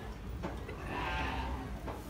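A Beni Guil sheep bleating once, a single call about a second long that starts just under a second in. Two short knocks sound around it.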